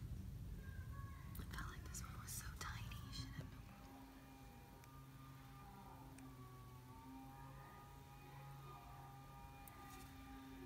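Faint whispering with a few clicks, dropping after about three and a half seconds to a quiet background of faint steady tones.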